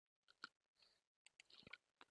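Near silence, with a few faint short clicks and soft rustles scattered through it.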